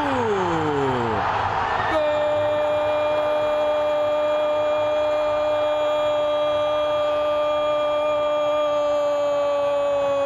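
Brazilian TV commentator's drawn-out goal cry, a single 'gol' shout held on one steady pitch for about eight seconds. It comes after about two seconds of stadium crowd roar with a falling vocal cry.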